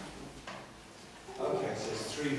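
Speech in a meeting room: faint talking, then a louder voice starts about one and a half seconds in.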